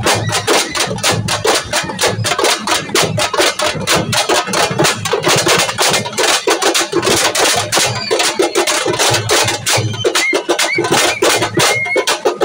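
Loud, rapid drumming from a festival drum band, with steady, dense beats. A few short high tones come in near the end.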